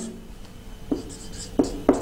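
Whiteboard marker writing on a whiteboard: a few short scratchy strokes and light taps of the tip.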